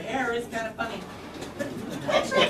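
A performer's voice speaking a short phrase in the first second or so, then a quieter stretch with only faint voice sounds.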